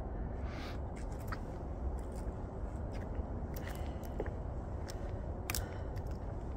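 Footsteps on a wooden boardwalk: scattered light clicks and scuffs over a low steady rumble.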